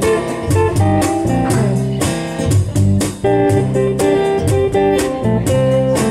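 Several musicians jamming live, with guitar playing a bluesy groove over a steady beat and bass line.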